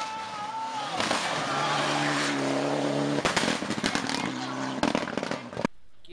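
A 4x4 rally car driven hard on a gravel stage, its engine held at high revs as it passes. There are sharp cracks around three and five seconds in.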